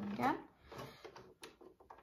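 A brief voiced sound from a person at the start, then a few faint clicks and light knocks as the stopped overlocker's needle and presser foot are handled.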